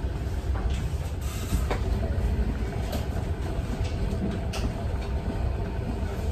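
De Rucci salon hood hair steamer running: a steady low rumble with a few faint sharp ticks scattered through it.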